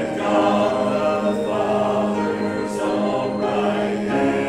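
A congregation singing a hymn together in long held notes that change about every second.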